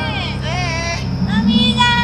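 A child's high voice singing or vocalising in sliding, wavering notes, over a steady low hum.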